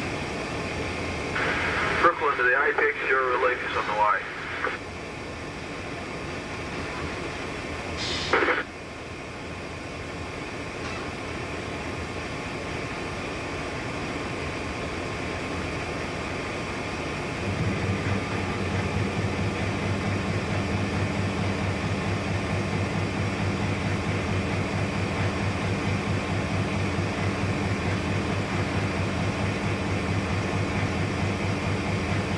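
Cab noise of X31, a Victorian Railways X class diesel-electric locomotive, running steadily. About two seconds in, a crackly two-way radio voice comes over for a couple of seconds, and a short burst of radio noise cuts in near eight seconds. From just past halfway a deeper, steady engine drone sets in and stays.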